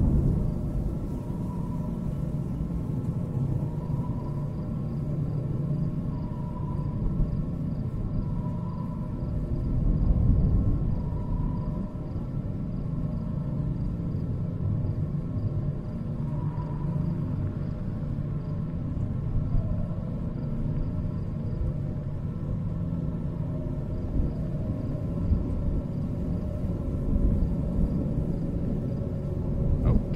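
Low steady rumbling ambience of a horror film's sound design, swelling about ten seconds in. Faint short high notes recur every two to three seconds through the first half.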